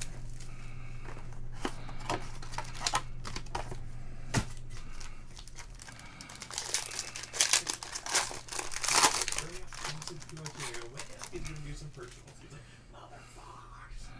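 Cardboard trading-card box being opened, then a foil card pack torn and crinkled open by hand. The crinkling comes in sharp bursts and is loudest from about seven to nine and a half seconds in.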